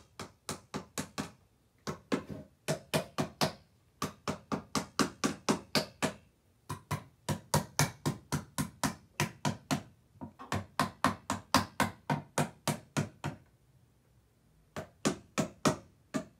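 Rapid, even knocks of a hard stick, about five a second, in runs of two to three seconds broken by short pauses, as a painting drumstick is rapped over and over.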